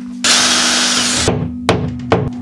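Cordless drill boring a pilot hole into the wall for about a second, then stopping; near the end a hammer taps once against the wall.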